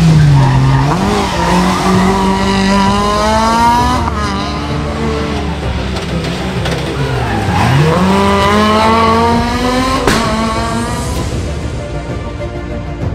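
Fiat Seicento rally car's small engine revving hard under acceleration. Its note climbs steadily and drops sharply about a second in, near four seconds and again at about seven and a half seconds, where it lifts for a corner or gear change before climbing again.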